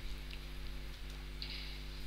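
Steady low electrical hum of the recording setup, with faint hiss.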